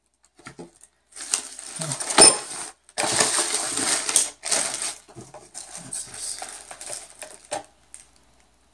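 Plastic bags of small parts crinkling and rustling as they are handled and rummaged through in a cardboard box, with one sharp click a little over two seconds in.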